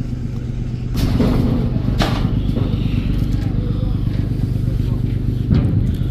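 A passenger river launch's diesel engine running with a steady low drone as the vessel berths at a pontoon, stepping up in level about a second in. A few short knocks sound over it, about one, two and five and a half seconds in.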